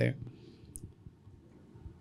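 Low room tone in a pause between a man's words, with one short, high click a little under a second in.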